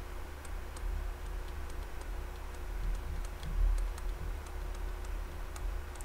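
Faint, irregular ticks of a stylus on a pen tablet while an equation is handwritten, over a steady low hum.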